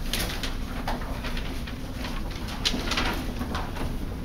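Papers being shuffled and handled, with a few sharp crinkles about two and a half seconds in, over a low steady room hum.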